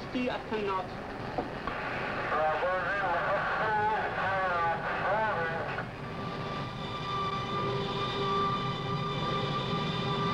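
Two-way radio chatter: a voice over the radio, thin and band-limited, for about the first six seconds. Then steady held tones of music take over.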